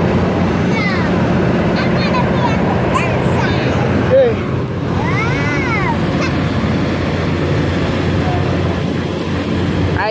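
Fairground ride running: a loud, steady machine hum under a rushing noise. Several high calls that rise and fall are heard over it, the clearest about five seconds in.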